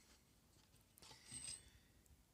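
Near silence: room tone, with one faint, brief rustle about a second and a half in.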